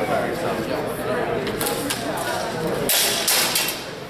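Onlookers' chatter echoing in a large hall during a longsword fencing exchange, with a few short sharp swishes about three seconds in as the fencers close.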